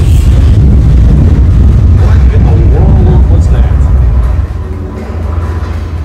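Loud, deep rumbling from the simulated earthquake effect in a theme-park subway-station set. It starts suddenly just before the lights go dark and eases off a little after four seconds in.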